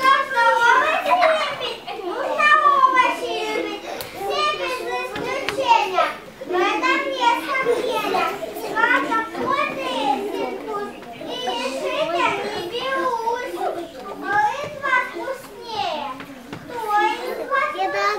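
Young children's high voices talking, going on almost without pause.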